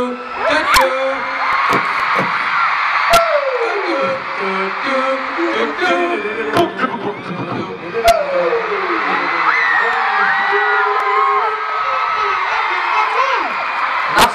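A man improvising a wordless, made-up superhero theme song into an amplified microphone, singing "do do do" notes that step up and down, with a couple of long falling swoops. A crowd of fans screams throughout.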